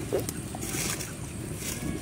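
A stone roller knocks once on a stone grinding slab (sil-batta) near the start. Then come two short dry patters as a handful of small seeds is dropped onto the slab. A steady low background rumble runs under both.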